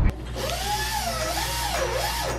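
Dental handpiece running in a child's mouth: a steady hiss with a tone that wavers up and down in pitch.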